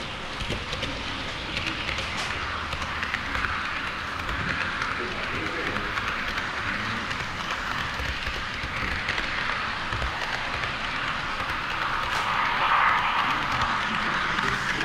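HO-scale model train running on KATO Unitrack, heard from a camera riding on it: a steady rolling hiss of wheels on track and a small motor, swelling louder near the end.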